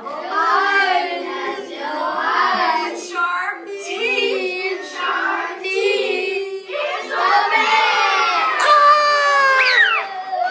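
A group of young children chanting and singing together in short sung phrases. Near the end a high child's voice slides steeply down in pitch.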